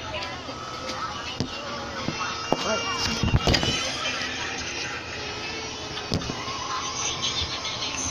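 Indistinct voices with a few sharp clicks.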